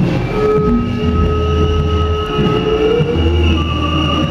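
A rail vehicle passing, its wheels squealing in several held high tones over a low rumble.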